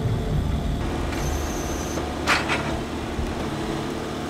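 Diesel engine of a horizontal directional drilling rig running steadily, with a faint high whine coming in about a second in and a brief hissing burst a little after two seconds.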